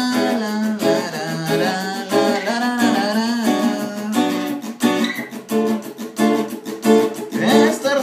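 Acoustic guitar strummed in a steady rhythm, with a man's wordless sung melody over it for the first half and again near the end.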